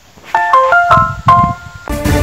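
Electronic news-bulletin jingle: a quick run of short, bright keyboard notes stepping between pitches, starting about a third of a second in, then fuller theme music with a deep bass cutting in near the end.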